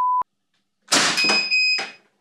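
A steady 1 kHz test tone cuts off with a click just after the start. About a second in comes a shot from a CO2-powered T4E .43-calibre pistol, and as it dies away the chronograph gives a high beep on registering the shot's velocity.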